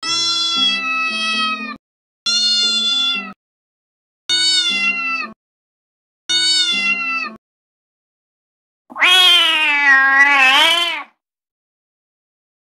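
Four short music-like notes, each about a second long with steady pitch and a low accompaniment, then one long domestic cat meow about nine seconds in, lasting about two seconds and rising and falling in pitch.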